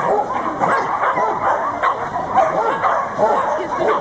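A dog barking and yipping, many short calls in quick succession.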